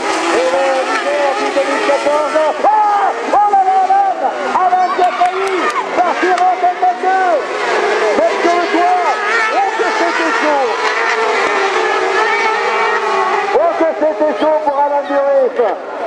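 Several sprint buggies racing on a dirt track, their engines overlapping and revving up and down again and again, the pitch rising and falling in quick sweeps through the bends.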